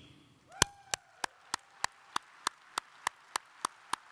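One person clapping steadily, about three claps a second, sharp and close, starting about half a second in, over faint applause from the audience.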